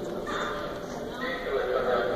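Indistinct voices talking by a grand piano, then a few sustained piano chords sounding again in the second half.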